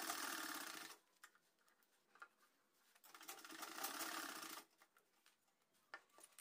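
Sewing machine stitching a seam in two short runs: the first stops about a second in, and after a pause a second run lasts about a second and a half.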